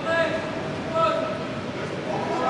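Speech: a voice talking briefly twice, over a steady murmur of background noise.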